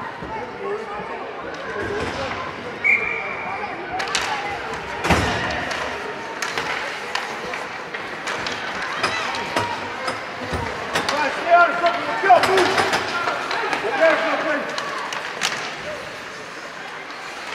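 Youth ice hockey game sound: spectators talking and calling out over sharp clacks of sticks and puck. There is a heavy knock about five seconds in, and a cluster of louder clacks and shouts around twelve seconds.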